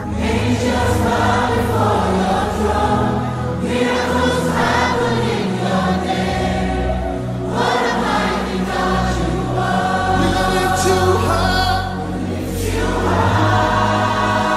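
Gospel worship song: a choir singing in long phrases over sustained low bass notes, with new phrases starting about 4, 7½ and 12 seconds in.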